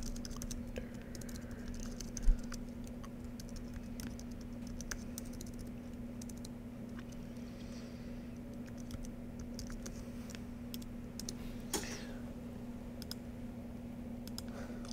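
Typing on a computer keyboard: scattered, uneven key clicks over a steady low electrical hum, with one loud low thump about two seconds in.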